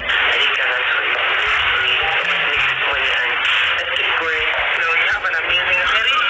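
A woman talking over background music, with a thin, phone-like sound cut off in the highs.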